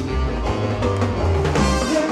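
Live salsa orchestra playing an instrumental passage, with a bass line and Latin percussion keeping a steady beat.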